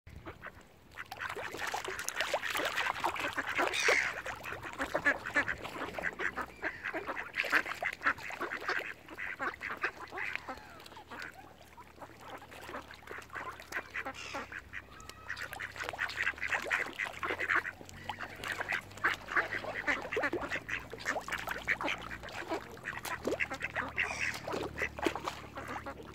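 A flock of mallard ducks quacking close by: a busy, overlapping clamour of rapid quacks that swells and eases in bouts of a few seconds.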